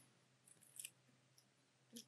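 Near silence: room tone with a faint short click a little before the middle and another just before the end.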